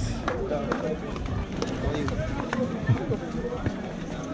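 Several people talking at once, indistinct, mixed with scattered sharp clicks of footsteps on hard ground as a line of football players walks past.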